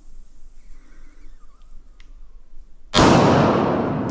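A pistol shot about three seconds in: sudden and very loud, with a long echo dying away off the concrete walls of an indoor range.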